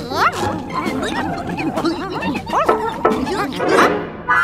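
Several cartoon Vegimals chattering in wordless, animal-like babble: many short, overlapping calls that quickly rise and fall in pitch.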